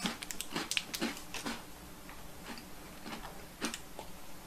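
Mouth-closed chewing of a crisp chocolate-coated biscuit: scattered crunches, several in the first second and a half, fewer after, and one sharp click near the end.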